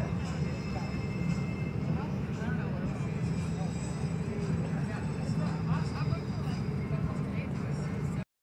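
Steady low hum of an airliner cabin, with faint voices of other passengers talking over it.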